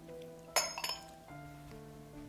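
Glass cup clinking twice, about a third of a second apart, with a short high ring, as it is set down among glass and ceramic teaware, over background music.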